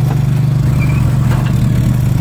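Compact tractor engine running steadily under load, with a fast even pulse, as it drives a PTO-powered First Products Aera-vator whose spinning tines work the dead turf.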